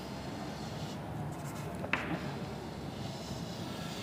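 Chalk drawing on a blackboard: faint scratching strokes, with one sharp tap of the chalk about two seconds in, over a steady background hum.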